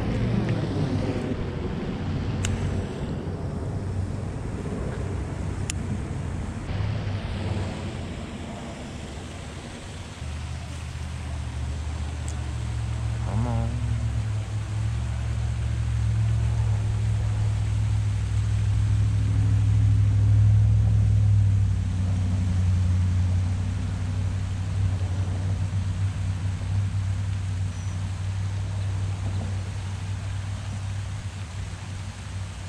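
Low rumble of passing road traffic, swelling to its loudest about two-thirds of the way through and then easing off. A brief splash of water comes at the very start.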